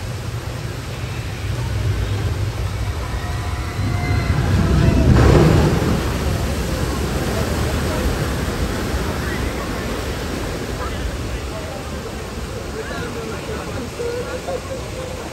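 Water-ride boat of Jurassic Park River Adventure splashing down into its pool, with waterfalls and churning spray. The sound is a loud rushing wash that swells to its loudest about five seconds in, then settles into a steady rush of falling and churning water.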